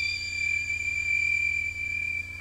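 Electroacoustic music made of sustained electronic tones: a high, steady whistle-like tone over a low hum, with fainter tones above it.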